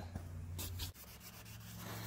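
Faint hand-sanding of a yellowed plastic ATV headlight lens: a few short rubbing strokes to cut away the yellow oxidation. A low steady hum sets in about a second in.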